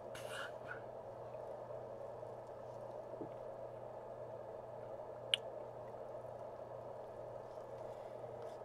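A short sip of carbonated water from a plastic cup right at the start, over a steady low background hum. A single sharp click about five seconds in.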